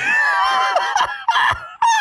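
A man's shrill, high-pitched laughter: one long squealing laugh for about a second, then a few shorter squeals.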